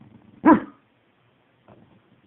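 A corgi giving a single short, loud bark about half a second in.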